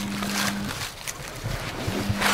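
Rustling and crackling of dry fallen oak leaves as a small mushroom is cut out of the leaf litter with a knife, with wind buffeting the microphone. A steady low hum sounds through the first third.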